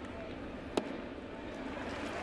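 Baseball stadium crowd murmur with a single sharp pop about three quarters of a second in: a pitched ball smacking into the catcher's mitt.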